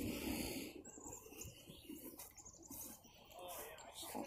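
Quiet outdoor background with a few faint, short high chirps, likely birds, and faint handling noise.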